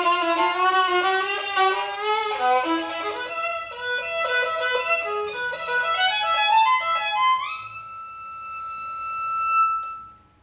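A 1920s–30s German three-quarter-size violin from the Wilhelm Kruse workshop played solo with the bow: a flowing melody with vibrato, then a slide up about seven seconds in to one long high note that swells in loudness and stops near the end.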